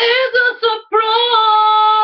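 A woman singing alone, without accompaniment: a few short broken notes, then about a second in a long held note with a slight waver, through a webcam microphone.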